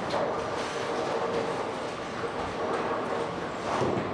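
Bowling alley din: a steady rumble of bowling balls rolling on the lanes and the machinery, with a few short clatters of pins being struck.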